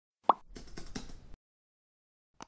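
Intro sound effect: a short plop that glides quickly upward, about a quarter second in, followed by about a second of faint crackly noise with a few small clicks.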